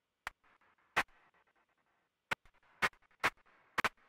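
Soloed synthesized clap from an Arturia Synthi V patch, a noise oscillator shaped into a clap, playing as short, sharp hits at uneven intervals, about six in four seconds, with a faint hiss between. The playback stutters because the computer's CPU is overloaded.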